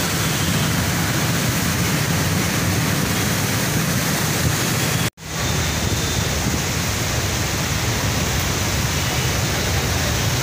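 Steady rushing noise of wind and fast-flowing floodwater, with a low rumble under it. About five seconds in, the sound cuts out for an instant at an edit and fades back in.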